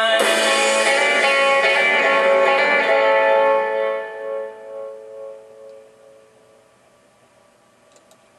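A pop-rock band's closing chord, held loud for about three and a half seconds and then dying away to a faint ring by the end.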